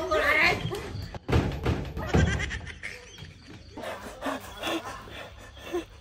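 Frightened shouting and wailing voices. There are two heavy thuds, about a second in and again about two seconds in, from a door being slammed shut.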